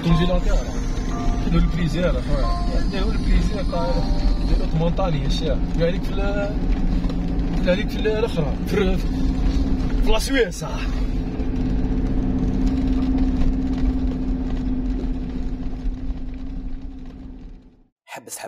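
Steady low rumble of a car's engine and road noise heard from inside the cabin, with voices over it for roughly the first ten seconds. It fades out just before the end.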